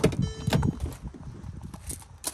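The driver's door of a 2012 Mercedes-Benz GLK350 is opened: a sharp latch click as the outside handle is pulled, a brief high tone just after, then lighter clicks and handling noise as the door swings open.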